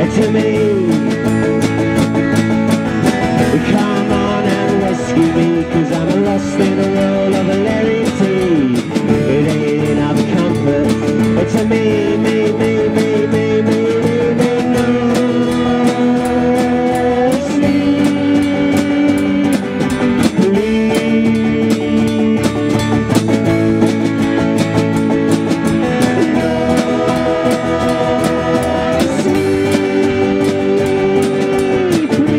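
Live band music: strummed acoustic guitar with a second electric stringed instrument. Over them runs a long-held melody line that slides up and down in pitch, without words.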